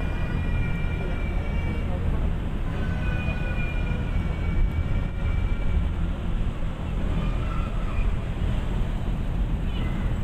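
City street traffic: a line of cars creeping past at walking distance, with a steady low engine rumble. A high, thin whine sounds over it in the first couple of seconds and again for a few seconds in the middle.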